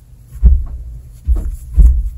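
Three dull, low thumps, the first about half a second in and two more close together in the second half, as hands work a crochet hook through yarn: handling bumps from the crocheting.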